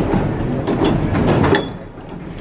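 Paris Métro train standing at a station: a steady, loud din of the train and platform with scattered clunks, and a thin high whine partway through.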